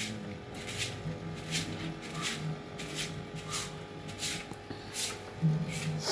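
A short hand broom sweeping a concrete path with a steady rhythm of swishing strokes, about one every 0.7 seconds.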